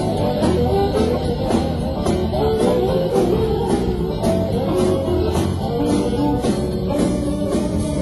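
Electric blues band playing live: melodic electric guitar lines over bass and drums, with a steady cymbal beat.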